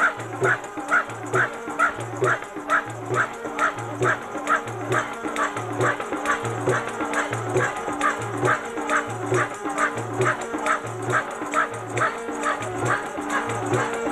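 Live devotional music: a drum keeping a steady beat about twice a second, a sharp high note repeating quickly on top, and a held drone underneath.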